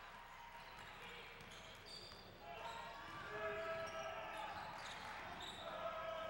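Basketball game court sound: a ball being dribbled on a hardwood gym floor under crowd noise. Voices in the gym get louder about halfway through.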